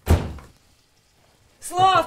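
A single heavy thump right at the start, dying away within about half a second. Near the end a woman begins calling out a name.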